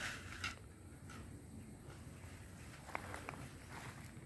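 Faint outdoor background sound, with two brief faint chirps about three seconds in.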